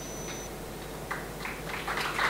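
Audience hand-clapping starting about a second in: a few scattered claps that thicken into applause.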